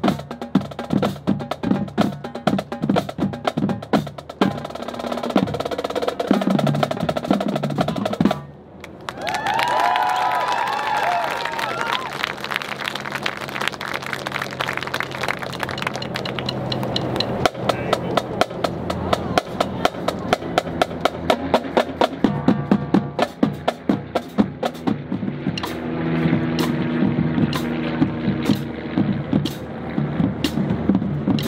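High school marching band playing, with rapid percussion strikes over sustained chords. The music breaks off briefly about eight seconds in, then starts again.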